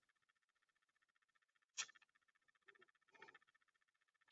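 Near silence: faint steady background noise, broken by one short click a little before halfway and a couple of fainter soft sounds near the end.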